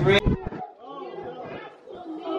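Music cuts off sharply just after the start, followed by quieter, indistinct chatter of several voices.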